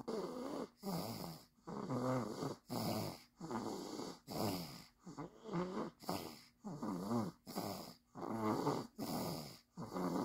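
Sleeping toddler snoring: a steady run of short pitched snores, a bit more than one a second.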